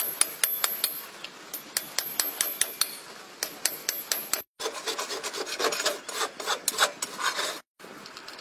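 A farrier's rasp filing a horse's hoof: a run of quick, sharp strokes, then, after a brief break, a denser stretch of rasping.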